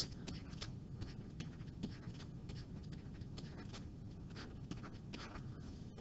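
Faint, scattered scratches and small taps of a stylus writing by hand on a tablet surface.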